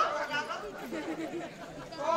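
Faint, low-level chatter of voices between louder lines of dialogue.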